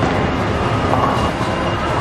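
Steady low rumble of a bowling alley, the sound of bowling balls rolling down the lanes.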